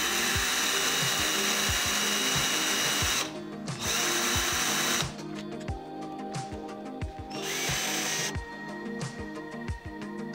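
Electric drill running on an aluminium heatsink strip in three bursts: a long run of about three seconds, a shorter one, then a brief one near the end, as the strips are fixed down with screws.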